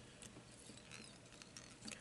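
Near silence: room tone with a few faint, small ticks from fingers working thread and tinsel on a fly held in a fly-tying vise.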